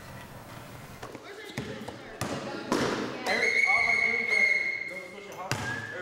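Basketballs bouncing on a gym floor, a run of thuds starting about a second in, with voices and a high steady tone held for about two seconds in the middle.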